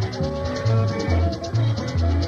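Haitian konpa dance band music: a bass line pulsing about twice a second under a quick, steady high percussion pattern, with a few held melody notes.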